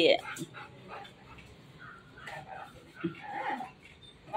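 A dog whining softly a few times in short, faint calls.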